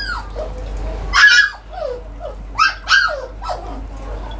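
A poodle barking in several high, sharp yips, with short whines that fall in pitch between them.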